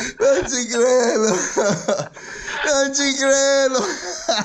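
A man laughing helplessly, his voice stretching into a long, held wailing tone near the end.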